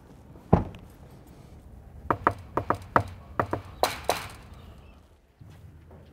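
A vehicle door shuts with one sharp slam about half a second in. It is followed by a run of about a dozen short, sharp knocks and clicks over roughly two seconds.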